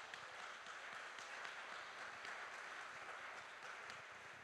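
Audience applauding: many hands clapping, faint and steady.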